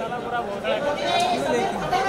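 Overlapping chatter of several people talking at once.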